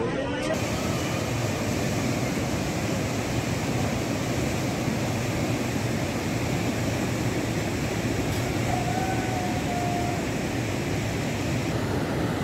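Steady rushing of the Teesta river in flood, fast, swollen water running past.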